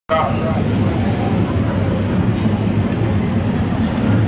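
Steady low rumble of dirt late model race car engines running at the track, with crowd chatter from the grandstand over it.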